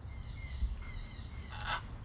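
Outdoor ambience at an aviary: a low steady rumble with faint bird calls, and a short breathy sound near the end.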